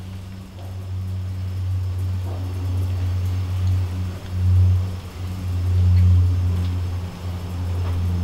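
A low, steady mechanical hum that swells twice near the middle.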